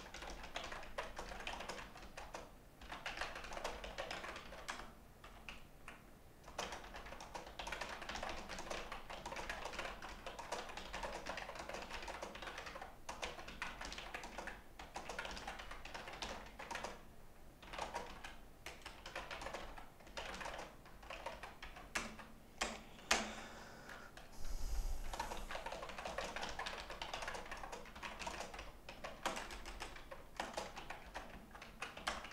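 Typing on a computer keyboard in quick runs of key clicks broken by short pauses. A few sharper single clicks come about three-quarters of the way through, followed by a brief low thump.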